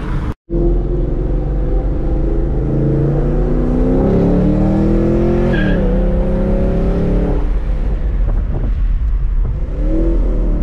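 Pontiac G8 GT's V8 heard from inside the cabin, accelerating with its pitch climbing, dropping at a gear change a little past halfway, pulling again, then easing off about three quarters of the way through.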